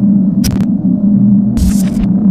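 Electronic glitch sound effect from a logo intro: a loud, steady low buzzing hum with bursts of static crackle about half a second in and again near the end.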